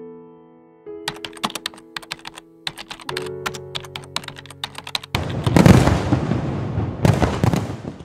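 Sustained electronic music chords with a run of quick, sharp clicks from about a second in. A little past halfway a loud firework-burst sound effect comes in and fades, and a second burst follows near the end.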